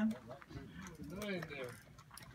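A person's voice talking quietly, too faint for the words to be made out.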